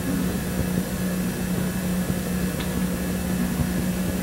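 Room tone: a steady low hum with a rumble beneath it.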